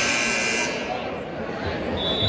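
Gym scoreboard buzzer sounding, cutting off suddenly under a second in, over crowd chatter in the gym.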